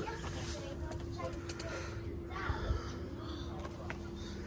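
Quiet outdoor garden ambience: a faint steady hum throughout, with distant bird calls and a few light clicks.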